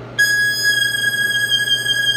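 Harmonica playing blues, holding one long high note that starts a moment in, just after a run of rising notes.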